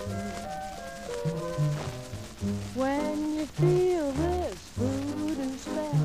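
Latin dance-band music played from a 78 rpm record on a turntable: a passage between sung lines, with repeated low bass notes and melody lines that slide up and down in pitch.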